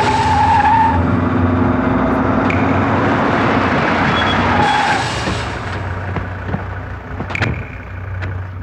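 A car drives up and brakes hard, its tyres skidding, the noise loud for about five seconds and then falling away. A few sharp clicks follow near the end.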